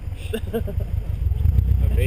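A man laughing briefly over a steady low rumble.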